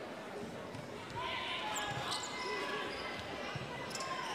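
Indoor volleyball arena: a steady crowd din with shouts, and the sharp slaps of a volleyball being served and played as a rally starts on set point.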